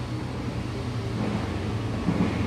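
A steady low mechanical hum that holds an even pitch throughout, with a brief faint voice in the middle.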